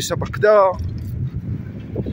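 A man's voice says one word, then a low steady rumble of wind and road noise from riding a bicycle along a street.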